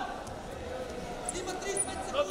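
Wrestling shoes giving a couple of short squeaks on the mat as the wrestlers shift their feet, over voices in a large arena.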